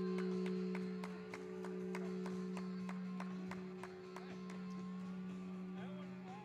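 A large 1,800-pound bronze bell's low F-sharp hum ringing on steadily after being struck. A quick run of light ticks, about three a second, sits over it for the first four seconds or so.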